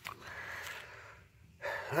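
A faint, airy breath lasting under a second, then a man's voice starting near the end.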